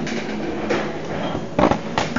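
Handling noise from a handheld camera being moved: a steady rustle with a low thump about one and a half seconds in.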